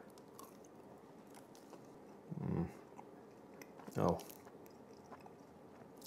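A person chewing a bite of Slim Jim meat stick, faintly, with a short hum about halfway through and a spoken "oh" near four seconds in.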